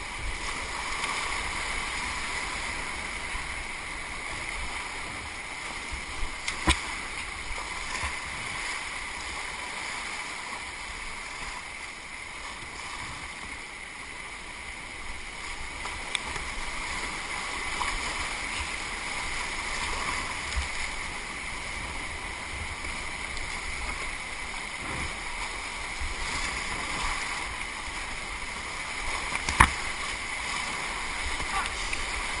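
Flood-swollen river rapids rushing steadily around a whitewater kayak, with a few sharp knocks, the loudest near the end.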